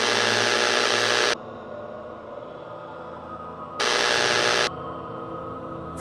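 Eerie ambient music of sustained tones, broken twice by sudden bursts of loud, static-like hiss: one lasting about a second and a half right at the start, a shorter one about four seconds in. Each burst cuts off abruptly.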